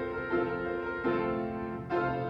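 Church organ playing slow, sustained chords, with a new chord coming in three times.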